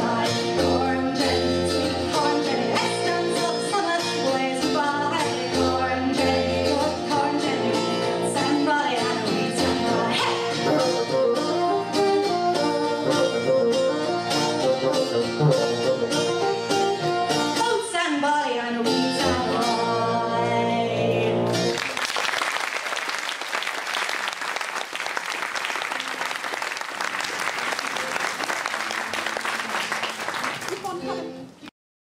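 Live folk band playing an instrumental passage on bassoon and plucked strings, ending with a falling run; the music stops about two-thirds of the way through and the audience applauds for the rest.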